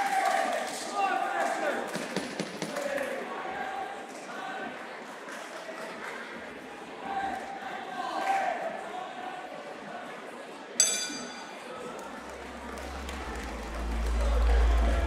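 Raised voices shouting through the fight in a large, echoing hall. About eleven seconds in, the ring bell is struck once and rings briefly, marking the end of the round. Music with a heavy bass starts up soon after.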